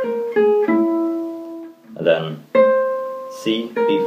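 Gypsy jazz acoustic guitar playing single picked notes of a slow phrase that mostly steps downward, each note left to ring, one held for about a second. A couple of brief spoken words fall between the notes.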